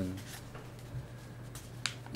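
Quiet room tone with one sharp click near the end.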